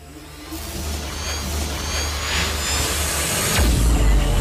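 Whoosh-and-rumble sound effect for an animated outro: a deep rumble under a rushing swell that grows steadily louder, with a falling sweep midway and another near the end, capped by a heavy low boom.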